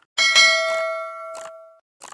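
A bell-like ding sound effect, struck once just after the start and ringing out with several tones that fade over about a second and a half. There is a short click just before the ding and another partway through its ring.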